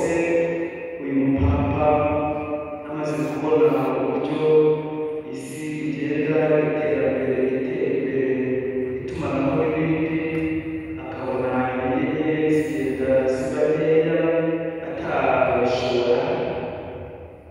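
Liturgical chant sung by voices, held notes in phrases of a few seconds each.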